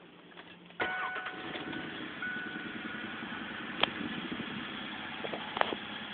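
The 1993 Ford Ranger pickup's engine starts about a second in and then runs at a steady idle. Two sharp knocks stand out over it later on.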